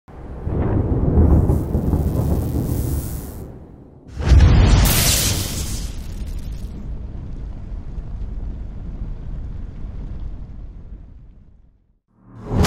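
Cinematic logo-intro sound effects: a deep rumble that swells and fades, then a sudden loud boom about four seconds in that dies away slowly.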